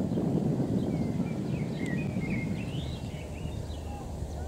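A songbird sings a short twittering phrase of quick gliding notes, starting about a second in, over a steady low rumble of background noise.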